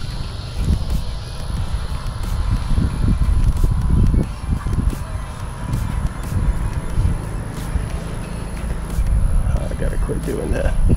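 Wind buffeting the microphone: a gusty low rumble that swells and fades, with a faint thin tone for a few seconds in the middle.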